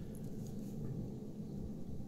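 Quiet room tone: a steady low hum with a few faint, small ticks.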